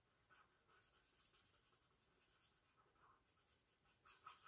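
Faint scratching of a fine-point marker on printer paper, in short repeated strokes as an area is filled in with black ink.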